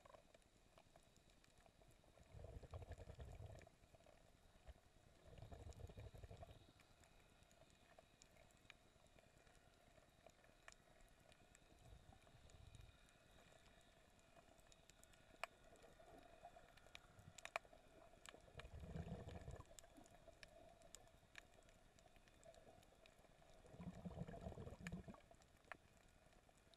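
Near silence of a camera recording underwater, with faint muffled low thuds every few seconds and a couple of small clicks.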